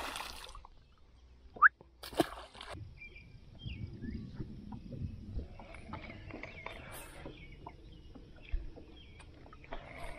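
Splashes of bass being dropped back into the water, followed by water sloshing around the boat. Faint bird calls sound in the background, and a short, sharp rising chirp about a second and a half in is the loudest sound.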